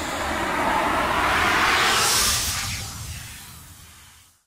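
Intro whoosh sound effect: a rushing noise over a low rumble that swells for about two seconds, then fades away.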